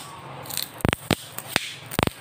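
A glass screen protector being peeled off a smartphone's screen with the fingers, giving a series of sharp clicks and short crackles, about half a dozen in two seconds.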